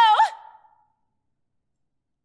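A woman's held sung note ends with a quick swoop in pitch and a breathy release in the first half second. The sound then cuts to dead silence.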